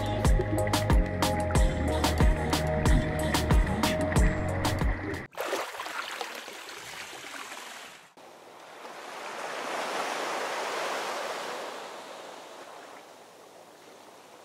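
Background music with a steady beat for about five seconds cuts off suddenly. It gives way to the wash of sea water at the surface, which swells once and fades.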